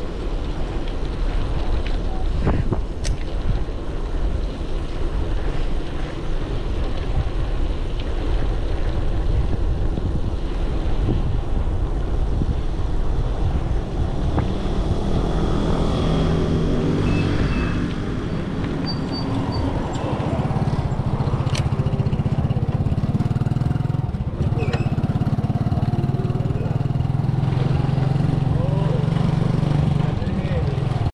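Wind rushing over a bicycle-mounted action camera's microphone with tyre noise as the bike rolls along asphalt. From about halfway on, a motorcycle-sidecar tricycle's engine running close ahead comes in as a steady low hum that grows louder and holds near the end.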